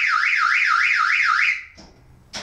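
Car alarm siren going off, a loud electronic tone sweeping up and down about three times a second, set off by someone touching the covered car; it cuts off suddenly about one and a half seconds in.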